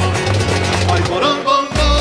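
Live band music with a pulsing bass line. About one and a half seconds in, the band breaks off briefly, then comes back in with a heavier bass and held notes.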